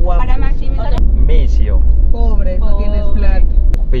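People talking and laughing over the steady low rumble of a car's engine and road noise inside the cabin. Two brief clicks come about a second in and near the end.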